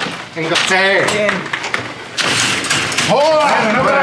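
Men's voices exclaiming and chattering excitedly, with a short hissing noise about halfway through.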